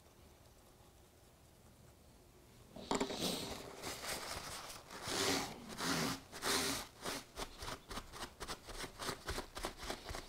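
Blue paper towel rustling and rubbing over model railway track, wiping the excess grey paint wash off the sleepers. It starts about three seconds in after a quiet start and goes on as a quick run of short scuffs.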